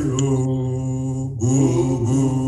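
A man's voice singing a worship chant in long held notes, with a short break and a change of pitch about one and a half seconds in, heard through a video call.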